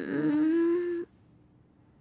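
A woman's drowsy moan, one drawn-out hum lasting about a second, as she stirs from sleep.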